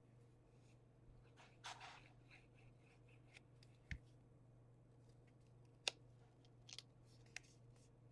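Quiet handling of paper and cardstock: faint rustles and a few small, sharp taps and clicks, the sharpest a little before the last two seconds, over a steady low hum.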